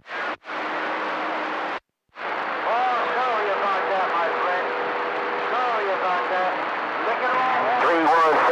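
CB radio receiver opening up on a keyed carrier: loud static hiss that cuts out twice briefly near the start, with a faint, garbled voice and a steady whistle buried in the noise.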